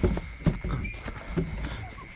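A few irregular soft knocks and scuffs: footsteps and shuffling of people moving about.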